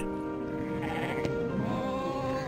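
Soft background music with long held notes, and a sheep bleating over it about a second in.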